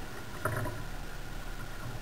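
Kayak paddle strokes in calm water, with one louder splash of the blade about half a second in.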